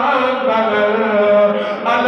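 A man's voice chanting in long, drawn-out notes that bend up and down in pitch, amplified through a microphone.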